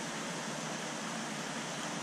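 Steady, even hiss of water and bubbles from a large aquarium's circulation and aeration.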